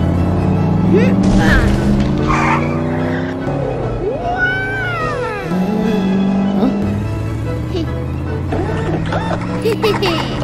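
Sound-effect engines of two cartoon go-karts racing, with tire skids, over background music. Short wordless voice sounds from the drivers come in around the middle.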